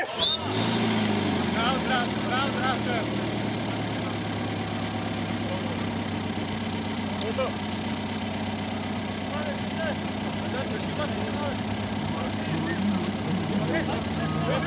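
Steady low engine hum, like a motor vehicle idling close to the microphone, with distant shouting voices scattered over it.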